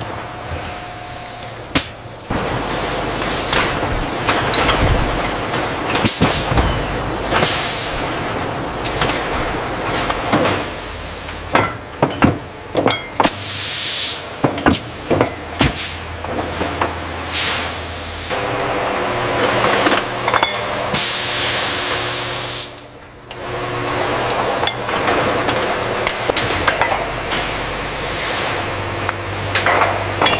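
Wine bottling line running: a steady mechanical din with frequent clanks and knocks from the rotary filler, broken by several hissing bursts of compressed gas. The longest hiss comes about two-thirds of the way through.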